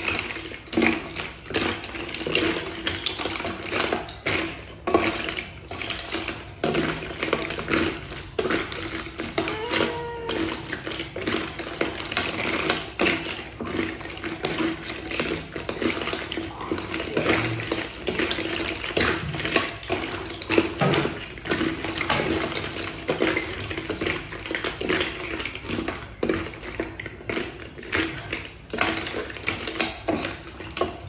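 Snail shells clattering against each other and the pot as they are stirred with a wooden spatula, a dense run of irregular clicks and knocks, with a steady low hum underneath.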